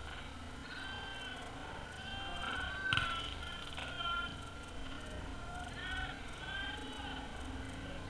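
Faint distant shouts and calls from football players across the pitch, the sharpest about three seconds in, over a low wind rumble on the microphone.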